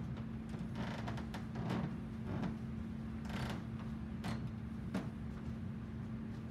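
A few short scrapes and rustles from someone moving about and handling things, over a steady low hum of room equipment.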